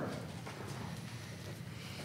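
Quiet pause in a meeting room: low room tone with a few faint light taps.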